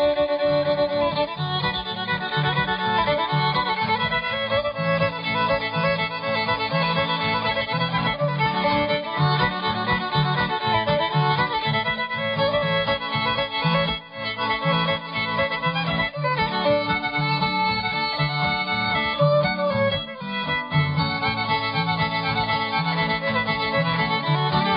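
A bluegrass fiddle tune played on a fiddle in a junior fiddlers contest, with guitar backup keeping a steady, even bass rhythm underneath.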